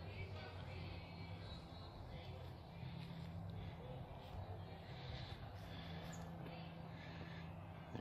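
Faint outdoor ambience: distant voices over a steady low hum.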